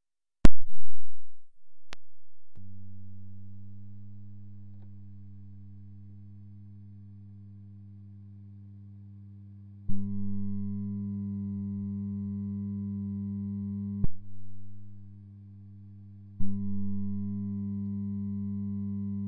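Low electrical hum with a stack of buzzy overtones, heard through the output of a Two Notes Torpedo C.A.B. and AMT R1 rig powered by a Fame DCT200 supply. It begins after a loud pop as a connection is made, jumps louder with a click about ten seconds in, falls back with another click, then jumps louder again near the end. The hum comes from underpowering: the Torpedo C.A.B. needs at least 300 mA and the DCT200 gives 250 at best.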